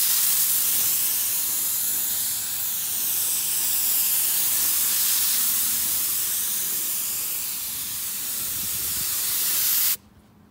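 Gravity-feed compressed-air paint spray gun spraying a coat of paint: one continuous loud hiss of air and atomised paint, swelling and dipping slightly as the gun sweeps across the panel, and cutting off suddenly near the end when the trigger is released.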